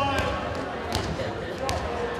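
A basketball dribbled on a gym's hardwood floor: three bounces about three quarters of a second apart, with voices in the hall.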